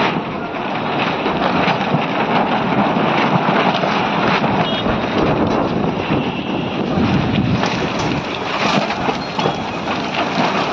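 A steady rushing noise, like wind buffeting the microphone, with no one speaking.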